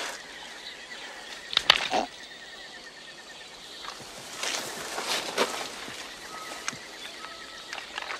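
Jungle ambience: a steady, high, pulsing trill runs under a few short sharp clicks and rustles, with brief thin chirps near the end.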